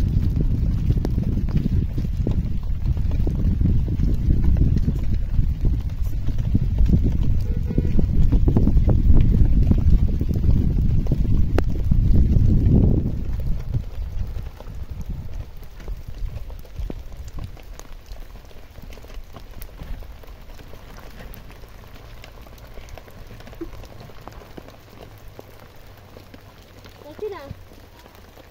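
Wind buffeting the microphone: a heavy, gusty low rumble that eases off sharply about halfway through, leaving a much quieter background.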